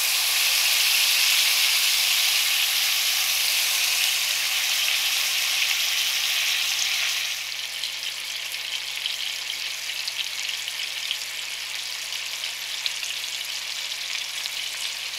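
A spice-rubbed beef roast sizzling as it goes into hot oil in a frying pan to be seared. The sizzle starts suddenly and loud as the meat meets the oil, then drops to a quieter, steady sizzle about halfway through.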